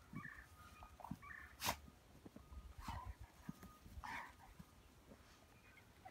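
German Shepherd dogs playing in snow, with a few short, faint vocal sounds and one sharp click-like sound about two seconds in.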